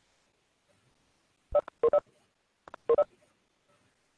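Webex meeting app notification sounds: two quick clusters of short electronic beeps, a little over a second apart.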